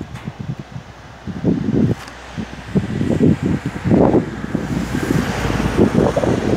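Wind buffeting the phone's microphone: irregular low rumbling gusts that grow stronger partway through, with a wider rushing hiss building near the end.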